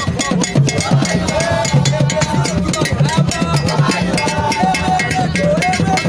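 Lively drum-driven music: dense, steady hand percussion with a repeating bass pattern and a melody line over it.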